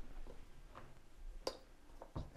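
Faint handling of a plastic plug and cable at a battery box's 12-volt socket, with one sharp click about one and a half seconds in.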